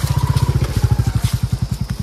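A motorcycle engine running close by, a rapid, even, low-pitched pulsing that grows louder toward the middle.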